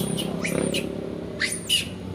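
Short, high-pitched animal calls, each falling steeply in pitch, about three in two seconds with the loudest near the end. A low rumble fades out in the first second.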